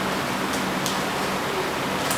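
Steady, even hiss of background room noise, with two faint ticks in the first second.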